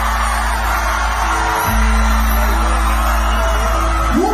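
Live cumbia band playing an instrumental passage: a deep held bass line that shifts note about halfway through, under keyboard and percussion.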